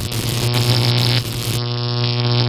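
Synthesized electric buzzing sound effect from an intro animation: a steady, loud buzz over a low hum. The highest hiss drops away about one and a half seconds in.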